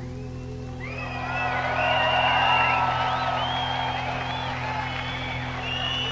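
Sustained low droning tones of a live band's music ringing out at the end of a song, with a crowd cheering and whooping that swells from about a second in.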